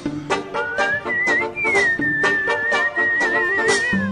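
Background pop music in an instrumental passage: a high, whistle-like lead melody with vibrato climbs early on, then holds a long note over a steady beat.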